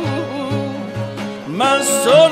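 Persian classical music performed live: plucked string instruments play over a low, regular pulse. Near the end a melodic line slides upward into a held, wavering note, typical of Persian classical singing.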